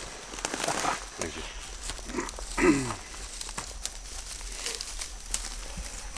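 Short murmured voices and a brief falling vocal sound like a 'mm' or laugh in the first half, over rustling with a few sharp clicks in the second half.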